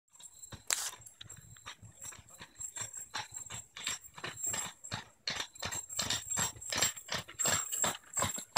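Hooves of a pair of draft horses clip-clopping on a gravel drive, with the crunch and rattle of a covered wagon's wheels, growing louder as the team comes closer.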